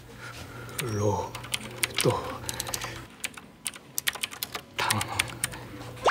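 A run of quick, sharp clicks like typing on a keyboard, with two short falling-pitch sounds about one and two seconds in.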